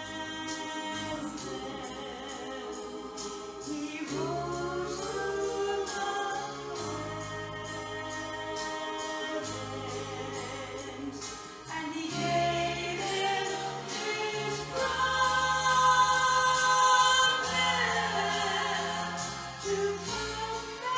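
A woman singing a gospel song with vibrato into a microphone over a sustained instrumental accompaniment. The singing grows louder and higher in the second half, with long held notes.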